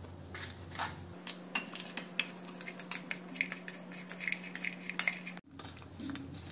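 Metal spoon clinking and scraping against a stainless steel bowl while chopped dry fruits are tossed in flour: a run of light, irregular clicks.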